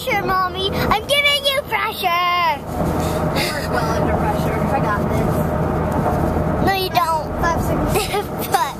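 A girl's voice rising and falling in wavering wordless calls in the first couple of seconds and again near the end. Between them is the steady road noise of a car cabin.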